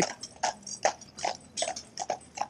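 Hooves of a pair of Friesian horses clip-clopping on wet tarmac at a walk, about four to five hoofbeats a second.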